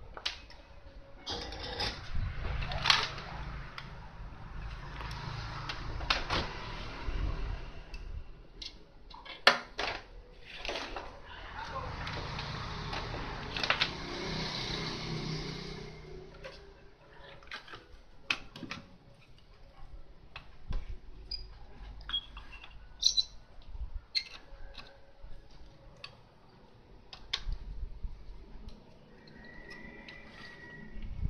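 Handling noise from a CRT TV's main circuit board and its old flyback transformer being moved about on a table: scattered clicks and knocks, with stretches of rustling and scraping in the first half.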